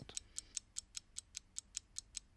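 Light, even ticking, about four sharp ticks a second, like a fast clock, with no voices.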